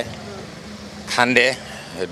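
Steady outdoor street background noise, broken by a man's short spoken word about a second in.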